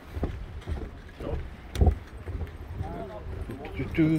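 Footsteps on the pier's wooden deck planks, a thump about every half second, the loudest near the middle, over low wind rumble on the microphone. Faint voices of people nearby.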